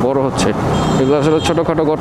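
A man talking over the steady running of a Yamaha MT-15 motorcycle engine, heard from the rider's seat while riding slowly.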